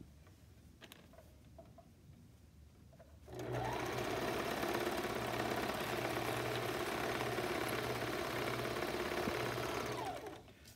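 A serger (overlock machine) starts about three seconds in and runs at a steady speed, overlocking the side seam of a fabric-and-PUL bag as part of a chain. Before it starts there are only a few light clicks of the fabric being positioned under the presser foot.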